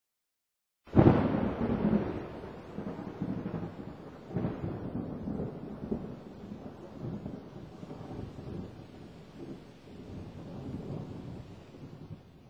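Thunder: a sudden clap about a second in, then a long rolling rumble with a few sharper cracks, slowly dying away.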